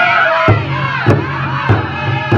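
Group of 49 singers ending a long held note with crowd voices around them. About half a second in, a drum starts beating a steady pulse a little under two beats a second, and the voices carry on over it.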